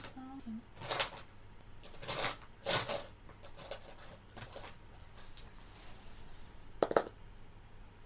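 Two ten-sided dice rolled for a percentile (d100) result: a few short, sharp clattering knocks spread over several seconds.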